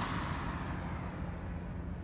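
Steady low rumble of road and tyre noise inside a moving car's cabin.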